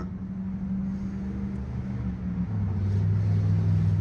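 A motor vehicle's engine running close by: a low steady hum that shifts lower and grows louder about halfway through.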